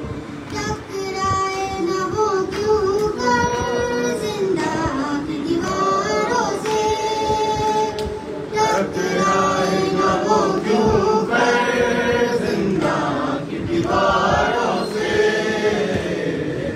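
A boy's voice chanting an Urdu noha, a mourning elegy, in a slow, wavering melody into a microphone. Other voices join in chorus.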